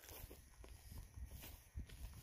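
Faint footsteps walking through pasture grass, a run of soft irregular steps barely above silence.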